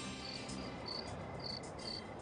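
Crickets chirping at night: short, high-pitched chirps repeating about twice a second.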